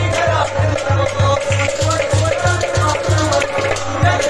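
A man singing a Kashmiri song over music, with an even low drumbeat about three times a second and a steady held note underneath.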